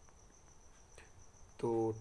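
A faint, steady high-pitched whine holds one unchanging pitch through a quiet pause, and a man's voice starts near the end.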